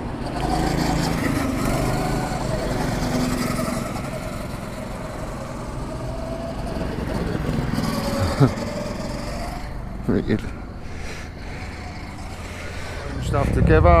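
Go-kart engines running around a track, their pitch wavering up and down as the karts lap, with one passing close about eight seconds in. A louder engine swells near the end.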